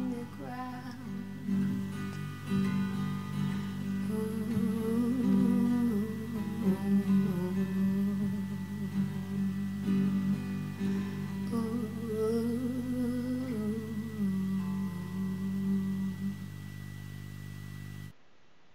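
Nylon-string classical guitar playing the closing bars of a song, with a woman humming a wordless melody over it. The playing thins out and quietens near the end.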